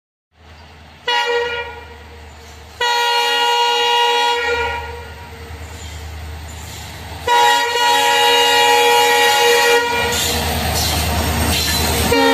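Electronic train-horn sound of a battery toy train, in three long steady blasts, with a low steady hum between them and a rushing noise near the end.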